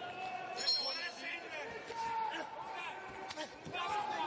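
Men's voices shouting, broken by a few short thuds.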